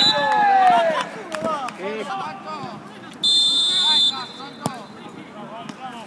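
Players' voices shouting on a five-a-side pitch, then a referee's pea whistle blown once for about a second, just after the middle. A single sharp knock follows a moment later.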